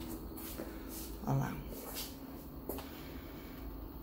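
Faint, steady hum of a lapidary bench's industrial sewing-machine motor as it is switched on and sets the lap disc spinning, running almost silently. A brief murmur of a voice about a second in.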